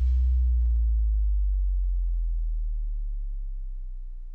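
A deep, steady bass tone that starts suddenly and slowly fades away over about four seconds, the closing note of the episode's outro music.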